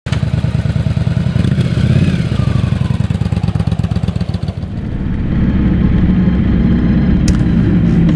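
Cruiser motorcycle engine pulling away from a standstill, its exhaust pulsing rapidly and unevenly. About halfway through the sound changes to a steadier, slightly louder drone as the bike rides on.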